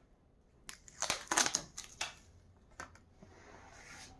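Blue painter's tape being peeled off a wooden kitchen drawer front: a crackling rip lasting about a second, starting about a second in, followed by a few short clicks.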